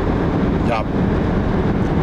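Steady road and engine noise heard from inside the cabin of a moving car.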